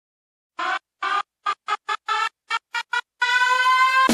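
Opening of a music track. After a moment of silence, a run of about nine short, pitched notes plays in rhythm, then one note is held from about three seconds in as the full band comes in at the end.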